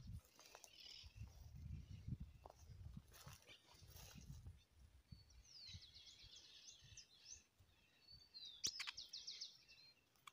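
Faint songbird singing two short, fast trilled phrases, one about six seconds in and one near the end, over low rumbling handling noise in the first half and a single sharp click.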